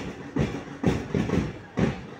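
A drum beaten in a marching rhythm, about two strokes a second with a few quicker doubled strokes between, keeping time for the marchers.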